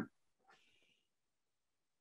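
Near silence, with one faint, brief sound about half a second in.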